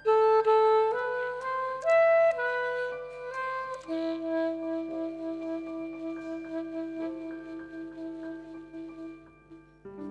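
Alto saxophone playing a slow melody: a few short notes stepping upward, then one long held note that fades away near the end.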